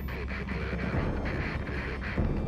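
A steady low rumbling drone with a faint even hiss above it.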